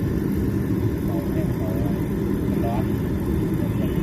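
Kerosene-fired forced-air heater running, its electric fan and burner giving a steady, low rushing noise that holds an even level.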